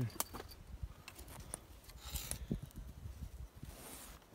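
Scattered clicks, snaps and short rustles of dry juniper branches as someone pushes in close among them, over a low rumble.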